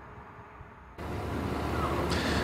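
A faint, quiet background that about a second in gives way suddenly to steady outdoor background noise with a low hum, the ambience of an open microphone at a live roadside location.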